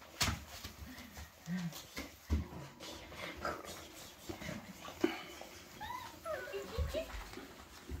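Young cocker spaniel puppies whimpering, with a few short high squeaks that bend up and down about six seconds in, amid the scuffling and small knocks of the litter moving about.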